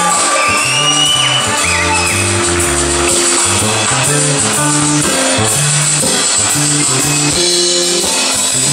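Live blues band playing: electric guitars over a stepping bass line and drums, with a steady beat and some bent guitar notes in the first couple of seconds.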